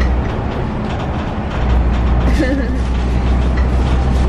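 Steady low rumble of a moving city bus, engine and road noise heard from inside the cabin; it eases for a moment near the start, and a voice speaks briefly about two and a half seconds in.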